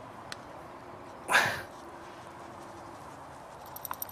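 One short vocal sound with a falling pitch, about a second and a half in, over faint outdoor background.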